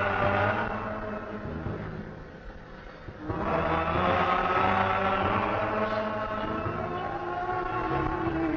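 Live concert recording of a band and voices holding sustained chords. The sound thins and drops about two seconds in, then swells back up a second or so later.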